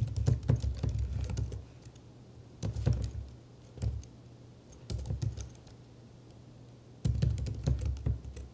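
Computer keyboard being typed on in several short bursts of keystrokes, with pauses between them and a longer lull shortly before a final burst near the end.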